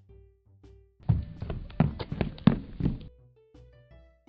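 Soft, sparse background music with a quick run of thuds and knocks, about five or six a second, that starts about a second in and lasts about two seconds.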